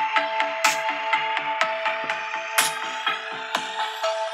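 An electronic music track with a steady quick beat and held synth tones plays from the Redmi Note 10 Pro's stereo speakers, with little deep bass. A cymbal crash comes about every two seconds.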